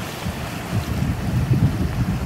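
Sea swell washing and surging over shore rocks, with wind buffeting the microphone; the low rumble grows louder about halfway through.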